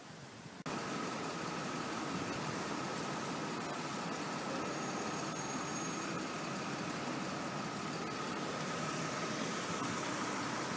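Steady outdoor town-street background noise, an even rumble and hiss of traffic with a faint steady high hum, starting abruptly less than a second in.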